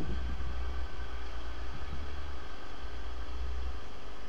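A steady low mechanical hum over an even background hiss, unchanging throughout.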